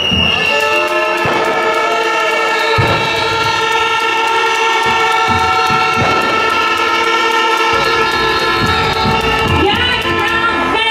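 A demonstration crowd blowing hand-held horns: several long, steady horn tones held together and overlapping, with crowd noise and a few low thumps beneath.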